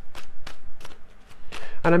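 A deck of tarot cards being shuffled by hand: a run of short, crisp card slaps about three or four a second. A voice starts speaking near the end.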